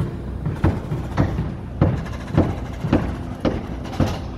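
Construction-site machinery: a diesel engine running steadily under a regular knocking, just under two knocks a second.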